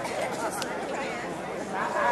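Indistinct chatter of several people in an audience talking among themselves, with a short click about half a second in.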